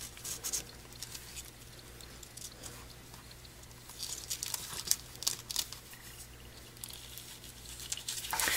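Faint rustling and light ticks of fingers tying gold cord into a knot around a cardstock card, the paper shifting under the hands, a little busier about halfway through.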